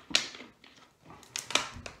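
Thin plastic water bottle crackling as it is handled, two sharp crinkles about a second and a half apart, with light ticks between.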